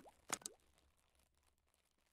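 Two quick pop sound effects about a third of a second apart from an animated logo intro, then the sound fades away to near silence.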